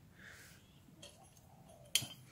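Faint room noise, then one sharp click near the end as a hand takes hold of a sheet-steel bracket lying on a concrete floor.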